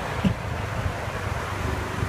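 Street traffic rumble with wind buffeting the microphone, and one brief low thump about a quarter second in.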